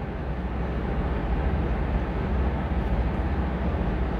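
Steady background noise of the recording: a low rumble with a hiss over it, even throughout, with a couple of faint ticks about three seconds in.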